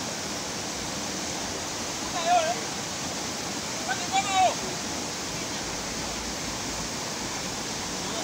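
River rapids rushing steadily over rocks. Two short, loud shouts break through, about two seconds in and about four seconds in.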